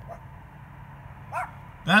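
A dog giving a short, rising, high-pitched yip about one and a half seconds in.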